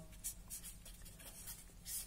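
Felt-tip marker writing on paper: faint short strokes of the pen tip as letters are drawn.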